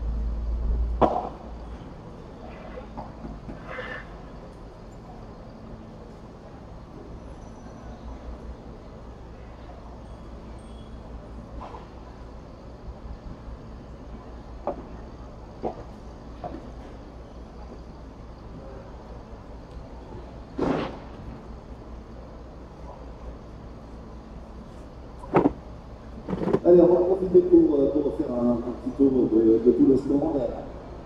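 Padel ball being hit with solid rackets during a rally, heard as sharp knocks at irregular gaps over a steady low hum. Voices talking near the end.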